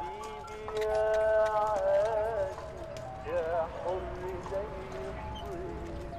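Music with a wavering, ornamented melody line, over a horse's hooves clip-clopping as it pulls a cart.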